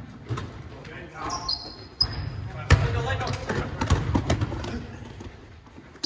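Basketball bouncing and sneakers on a hardwood gym floor, echoing in a large gym. Short high sneaker squeaks come about one and a half to two seconds in, and the sharpest knock comes a little under three seconds in.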